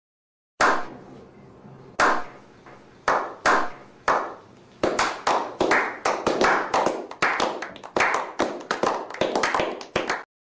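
A small group of people doing a slow clap: single hand claps about a second apart that speed up into quick applause.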